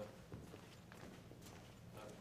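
Near silence: room tone with a few faint, irregular knocks or taps.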